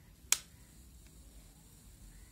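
A single sharp click about a third of a second in, from the plastic inner frame of a mobile phone being pressed in the hands.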